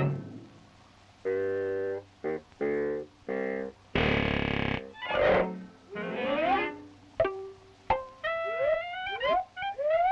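Early sound-cartoon music score with comic effects. After about a second of quiet come short stabbed notes, then a loud blaring blast about four seconds in. The second half has sliding notes that rise and fall, broken by a few sharp plucks.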